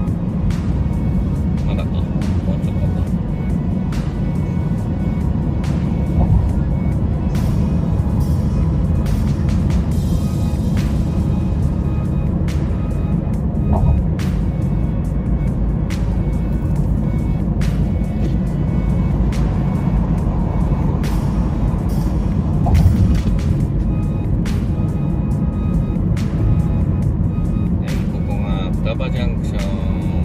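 Steady road and tyre rumble inside a car cruising on an expressway, with music playing over it.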